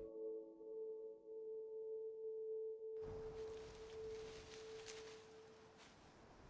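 A long, steady ringing tone, the lingering ring of a struck bell-like instrument, fading out near the end. About halfway through, a steady rustling hiss of wind through bamboo leaves comes in.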